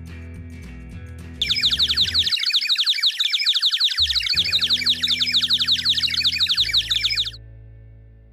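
Cartoon dizziness sound effect: a rapid, unbroken run of bird-like tweets and chirps, the sign of a character seeing stars after a crash. It starts about a second and a half in and cuts off abruptly near the end, over quiet background music.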